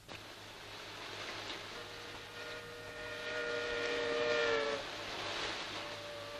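A river steamboat's whistle sounding one long chord of several steady tones that sag slightly in pitch before cutting off, over a steady rushing noise.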